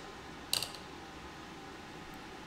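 A brief, light clatter about half a second in, as a steel digital caliper is handled and set against an RC drift car's suspension rod; otherwise faint room tone.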